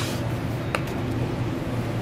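Steady low machine hum, with one short sharp click about three-quarters of a second in.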